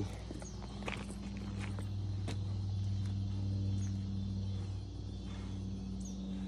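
A steady low mechanical hum, with a few faint footsteps on pavement and crickets chirring faintly.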